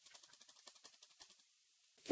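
Very faint computer keyboard typing: a quick run of light key clicks.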